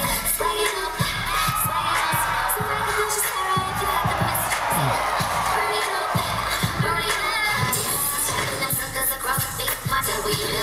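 Hip-hop dance music with a steady beat, with a crowd cheering over it, the cheering swelling from about two to six seconds in.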